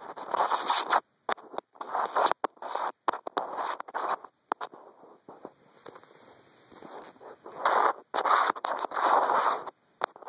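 Fingers scratching and rubbing right at the camera's microphone, in repeated short bursts with brief gaps and a few sharp clicks. There is a quieter stretch in the middle, and the louder scratching returns near the end.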